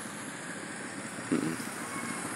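Steady outdoor background hiss with no distinct source, and a brief voice sound about a second and a half in.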